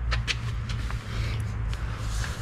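Steady low mechanical hum with a few light taps and clicks near the start, as a hand handles the steel frame of a nut harvester.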